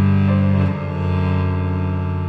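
Cello and Samick grand piano playing together in a classical chamber piece. The cello holds a long low bowed note while the upper notes change about a third of a second in, with a brief dip in loudness just past the middle.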